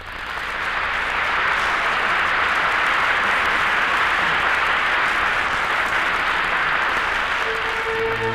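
Studio audience applauding steadily on an old radio broadcast recording, breaking out suddenly; orchestra music comes in under the applause near the end.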